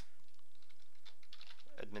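Light keystrokes on a computer keyboard, a run of key taps typing a word.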